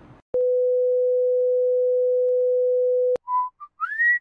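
An electronic beep: one steady pure tone held for nearly three seconds, starting and stopping abruptly. Near the end come a few short whistled notes, the last one rising.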